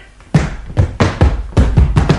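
A rapid series of dull thumps, about seven in under two seconds, each with a deep low end.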